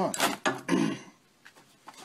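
Steel EMT conduit driver tool clinking and scraping against the trailer axle spindle as it is fitted over the sleeve, a few sharp metallic clinks in the first second, then a couple of faint clicks.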